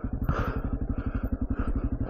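Honda CRF250F dirt bike's single-cylinder four-stroke engine running at low, steady revs, an even rapid thumping as the bike creeps along a trail.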